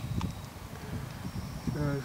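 Low, uneven rumbling noise on the microphone, with one faint click just after the start; a man's voice begins near the end.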